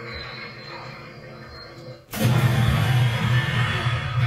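A Halloween bush animatronic's jump scare going off about two seconds in, after a low hum. It is a sudden, loud, steady low drone with hiss over it, from the prop's sound effect and moving parts as the monster face bursts out of the leaves.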